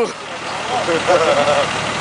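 Engine of a 4x4 bogged in deep mud running steadily, with voices of onlookers in the background.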